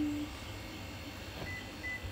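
Two short, faint high beeps about half a second apart near the end, over a low steady rumble.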